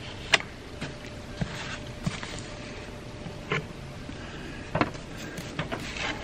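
Small wooden coins being handled on a paper-covered table: scattered light clicks and taps of wood, the sharpest about a third of a second in and others around three and a half and five seconds in.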